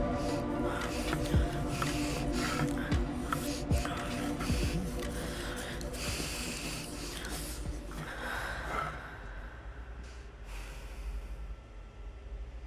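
A person breathing heavily in repeated gasps over music with long held tones; the music fades out about eight seconds in and the gasping goes on more quietly.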